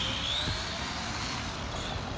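High whine of an RC buggy's Tamiya Super Modified 11-turn brushed electric motor at speed, its pitch rising a little and then sagging, over a steady hiss. The wheels are slipping inside the tyres on the wet surface, so it can't get the power down.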